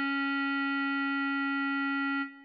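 A bass clarinet holding one long note, steady in pitch.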